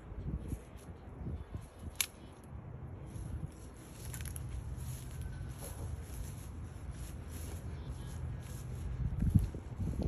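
Faint rustling and crackling in grass and brush as a dog noses through it, over a low wind rumble on the microphone. There is one sharp click about two seconds in and a thump near the end.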